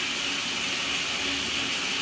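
Shower water running steadily, an even hiss in a tiled room.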